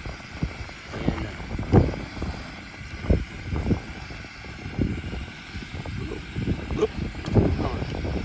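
Metal tongs stirring a cast-iron Dutch oven of food, with scattered clinks and knocks of metal against the pot, over a low rumble of wind on the microphone.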